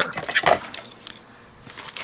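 Hard plastic stamping-gear wheels and cogs knocking and clattering against a clear plastic storage case as they are handled and set down: a cluster of sharp clicks in the first half-second, then a few fainter clicks near the end.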